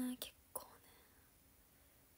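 A young woman's drawn-out spoken word trailing off right at the start, a brief soft sound from her mouth or breath about half a second in, then near silence: room tone.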